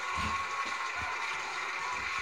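Dogs play-wrestling on the floor: a few soft low thumps over a steady hiss with a faint high tone.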